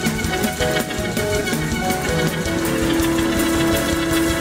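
Live church band playing fast, upbeat praise music, with quick steady drumming under keyboard chords; a held keyboard note comes in about two and a half seconds in.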